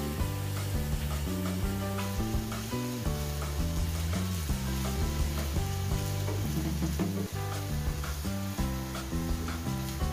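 Chopped onion and garlic sizzling in hot oil in a stainless steel pan, stirred with a silicone spatula, over background music with a stepping bass line.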